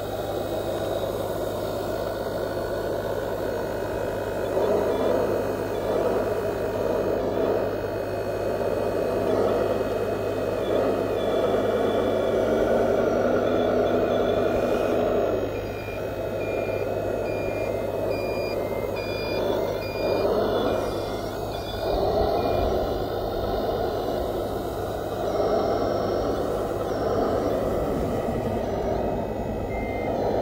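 Electric hydraulic pump and drive motors of a 1/14-scale RC Hitachi ZW370 wheel loader running as it drives up and lifts its bucket. The whine swells and dips as it works, with thin high tones that shift in pitch and break on and off in the middle.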